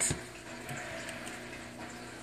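Quiet room tone with a low steady hum, a short click just at the start and a couple of faint ticks later on.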